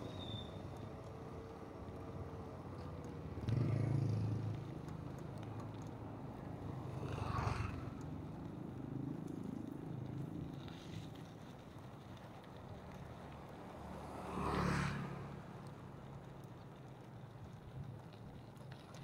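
Riding noise from a bicycle on a rough, patched road: steady rolling rumble and wind on the microphone, with three louder swells that rise and fall about four, seven and fourteen seconds in.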